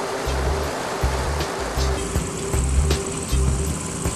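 Background music with a steady low beat, about two beats a second, over an even rushing noise.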